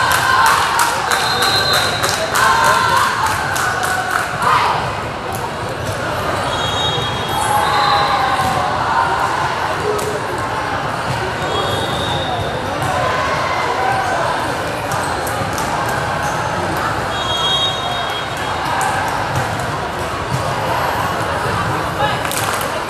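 Balls bouncing on a hardwood gym floor, frequent in the first half and sparser later, with sneakers squeaking now and then, over a steady chatter of voices in a large hall.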